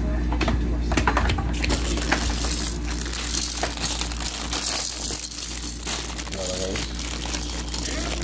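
Hard plastic baby-rocker frame pieces being handled and fitted together: a quick run of small plastic clicks and knocks in the first two seconds, then a stretch of crinkling.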